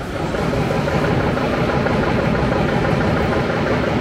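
Steady rumble of a vehicle engine running close by, over busy city street noise.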